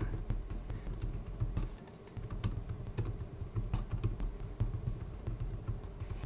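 Typing on a computer keyboard: a fast, irregular run of key clicks as a line of code is entered.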